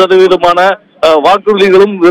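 Speech only: a man talking in Tamil, with one short pause about a second in.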